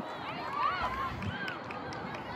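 Distant shouts and calls of several voices across an outdoor soccer field, overlapping, the loudest about half a second in.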